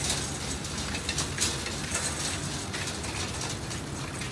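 Small two-tier wire shopping cart rolling over a concrete sidewalk, its wheels and wire baskets rattling continuously over a low steady hum.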